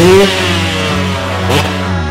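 Motorcycle engine revving, its pitch rising sharply and then falling away near the start, with a second short rev about one and a half seconds in.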